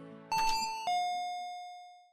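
Two-note doorbell chime, "ding-dong": a higher note about a third of a second in, then a lower note about half a second later that rings out and fades away.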